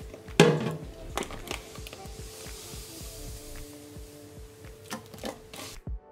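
Plastic vent brush pulled through wet hair in a stainless steel sink: scattered short clicks and knocks, the sharpest about half a second in, over faint background music.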